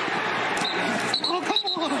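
Sound from the field of an NFL game: a steady stadium din, with men's shouting voices picked up by the field microphones from about a second in.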